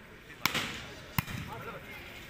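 A volleyball struck hard twice, about three quarters of a second apart: the sharp smack of the serve, then the slap of the receiving pass, with crowd voices around them.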